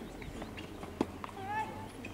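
A single sharp knock of a tennis ball on a hard court about halfway through, with faint voices around it.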